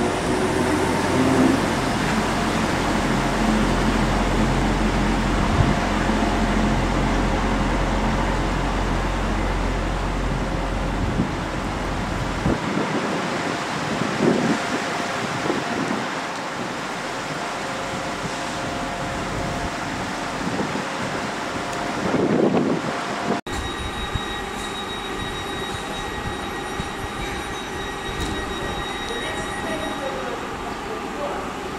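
Electric passenger train moving along the platform with a heavy low rumble that drops away about twelve seconds in, leaving lighter rumbling. After a sudden cut about two-thirds of the way through, a stationary electric multiple unit idles with a steady high-pitched electrical whine.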